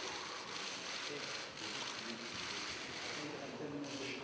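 Indistinct murmur of voices under a steady hiss of room noise, with no clear words.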